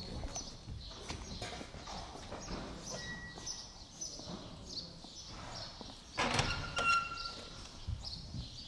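Scattered footsteps and small knocks in a horse stable, with birds chirping in short high calls. About six seconds in comes a louder clatter with a brief squeak.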